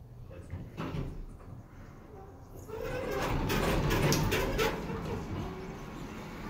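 Elevator doors sliding along their track on a hydraulic elevator, starting about three seconds in with a run of clicks and rattles.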